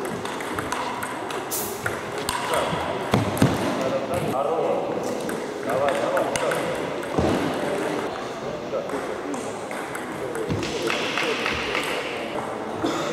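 Table tennis ball clicking off the rackets and the table in irregular runs during rallies, with voices in the background.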